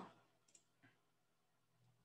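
Near silence with a few faint computer-mouse clicks: a sharper one right at the start and two softer ones about half a second and nearly a second in.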